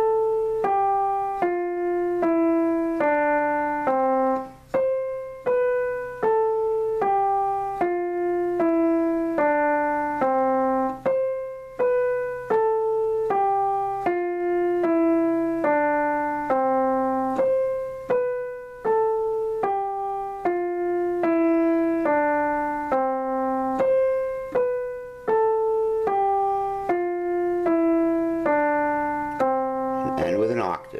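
Digital piano playing the C major scale descending one octave, from C down to C, in slow, evenly spaced single notes. The run is played about five times over.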